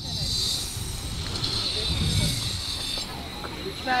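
Outdoor background noise: a steady high-pitched hiss over a low rumble, with no clear event.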